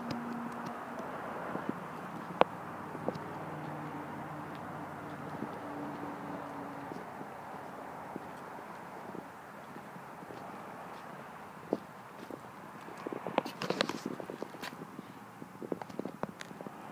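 Steady outdoor background noise with a faint low hum, broken by a few scattered footsteps on pavement and handling clicks, then a quick run of them near the end.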